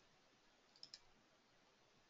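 Near silence with two faint clicks close together a little under a second in, made on the presenter's computer as the presentation advances to the next slide.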